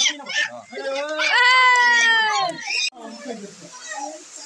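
Brief talking, then one long, high, drawn-out vocal cry lasting about a second and a half that sags in pitch at its end; the sound cuts off abruptly about three seconds in, leaving quieter room sound.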